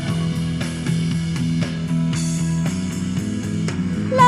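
Instrumental passage of a pop-rock song with no singing: guitar over a sustained bass and a steady beat of about two strokes a second.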